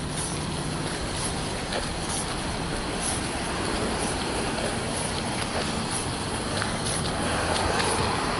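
Cars driving past: a steady rush of traffic noise that grows a little louder near the end as a car comes closer.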